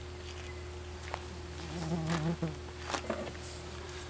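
A steady, even-pitched hum under a faint low voice in the background around the middle, with a few light clicks.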